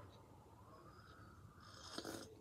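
Near silence: room tone, with faint sipping from a stainless-steel travel mug.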